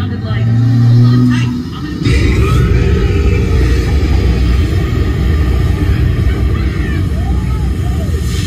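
A short stretch of ride music, then about two seconds in a steady low rumble with hiss takes over inside the submarine's cabin.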